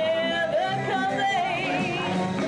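Big band swing music: a melody line held with vibrato over the band's accompaniment.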